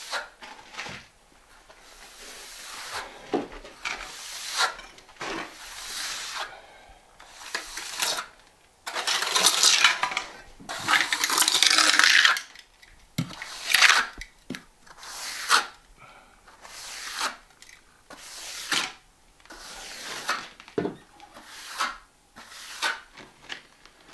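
Steel finishing trowel scraping across a packed bed of deck mud (sand-cement mortar) in repeated strokes, smoothing the shower floor to a finish. Two longer, louder sweeps come a little before the middle.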